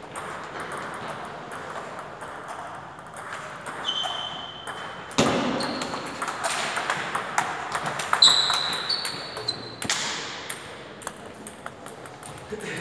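Table tennis rally: the celluloid ball clicking sharply back and forth off rubber paddles and the table. A few brief high-pitched squeaks come from shoes on the hall floor, around the middle and again about two-thirds of the way in.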